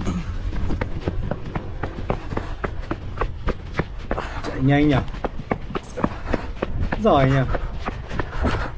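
Footsteps of a man running up stone stairs, quick footfalls at about three to four a second. His voice sounds briefly twice, about halfway through and near the end.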